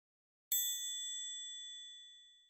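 A single bright, bell-like chime struck about half a second in, ringing out and fading over about two seconds: a logo sting sound effect.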